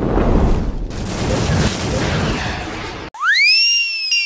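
Cartoon sound effects: a loud rushing blast for about three seconds that cuts off suddenly, then a whistle that glides sharply up and slowly falls away.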